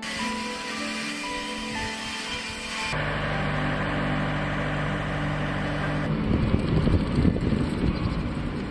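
A heavy truck's engine running with a steady low rumble from about three seconds in, over background music; from about six seconds in the rumble turns louder and uneven.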